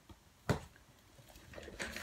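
A single sharp knock about half a second in, then soft, irregular rustling and crackling of plastic food packaging being handled.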